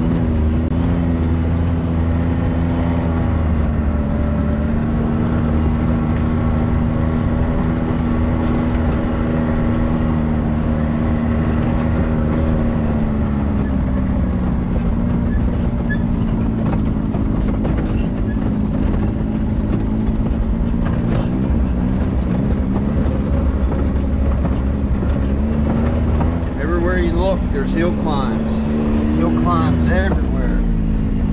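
Can-Am Maverick X3 side-by-side's turbocharged three-cylinder engine running steadily at low trail speed. The pitch drops a little around the middle and climbs again near the end, with scattered knocks from the machine working over rough ground.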